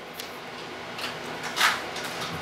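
Quiet handling of a hex key being fitted into a small adjustment screw on a metal laser mirror mount: a small click just after the start and a short scrape about one and a half seconds in.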